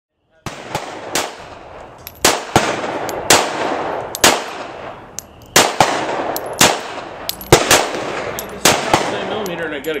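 Gunfire: a string of about fifteen sharp shots at irregular intervals, each with an echoing tail, over steady background noise.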